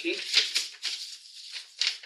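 Sheets of paper rustling as they are handled and shown, with a louder rustle about half a second in and another near the end.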